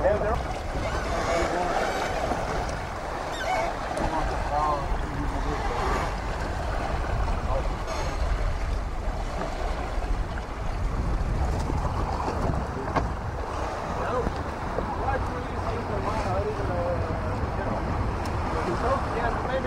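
Wind on the microphone and water rushing along the hull of a sailing yacht under way, a steady low rumble, with indistinct voices talking underneath.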